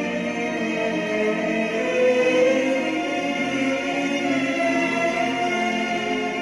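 Classical orchestral music with slow, sustained string chords.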